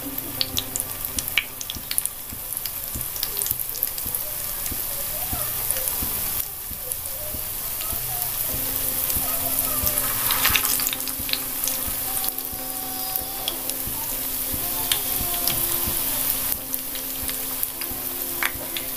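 Tapioca fritters shallow-frying in hot oil in a nonstick pan: a steady sizzle with scattered pops and crackles as more rings of dough are laid into the oil.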